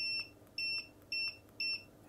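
Multimeter continuity beeper giving four short, high-pitched beeps about two a second, each as the Xbox One controller's tactile sync switch is pressed and its contacts close: the switch is working.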